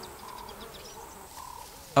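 Quiet bush ambience of buzzing flies and other insects, with a few faint, short calls.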